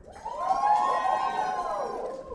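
A small group of audience members whooping and cheering together in answer to being called out by name, a single held 'woo' of several voices that swells in just after the start and fades away near the end.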